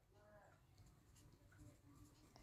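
Near silence with a pen faintly writing numbers on lined paper.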